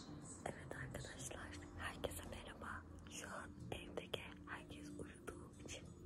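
A woman whispering close to the microphone in short, breathy phrases, over a faint steady low hum.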